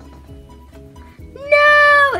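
Quiet background music with a simple stepping melody. About one and a half seconds in, a girl's high, drawn-out "ohh" of dismay breaks in, much louder than the music, and falls in pitch at the end.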